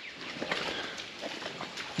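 Faint birds chirping over a quiet outdoor background.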